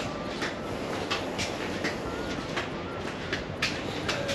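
Small birds chirping in short, irregular calls over a steady background noise.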